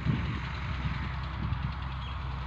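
Massey Ferguson 240 tractor's three-cylinder diesel engine idling steadily.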